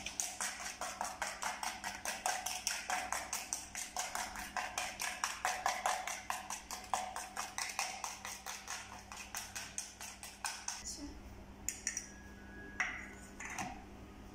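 Wire hand whisk beating egg and sugar in a plastic bowl: quick, regular strokes of the wires against the bowl, about five a second, stopping about ten seconds in. A few light clicks and knocks follow near the end.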